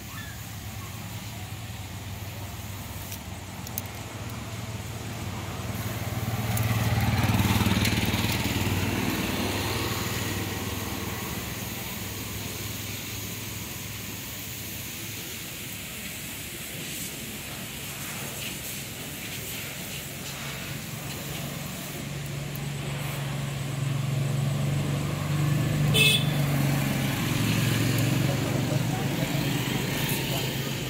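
Motor vehicles passing on the road: one swells and fades about seven seconds in, and another engine builds up toward the end, with a brief sharp high sound a few seconds before the end.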